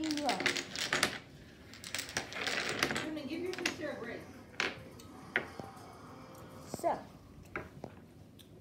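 Dominoes clicking and clattering against each other and the wooden tabletop as they are gathered up and stacked by hand. There are quick runs of clicks in the first few seconds, then a few single clacks.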